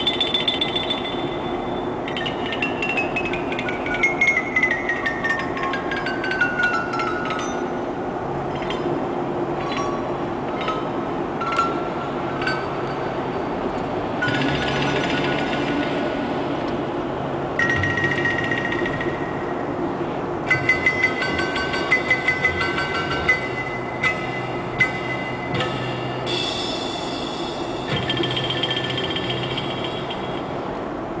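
Steady engine and road noise inside a moving vehicle's cabin, overlaid with rapid metallic rattling and clinking and intermittent high squeaks. Louder clatter comes a few seconds in and again past the middle.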